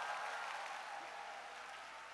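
A large crowd applauding, the clapping slowly dying down.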